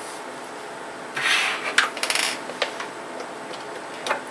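Hands handling a yellow plastic road lamp. About a second in there is a short rasping rub, followed by several light clicks and taps.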